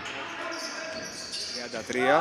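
Basketball game sounds on a hardwood gym court: a ball bouncing and players' shoes on the floor, echoing in the hall.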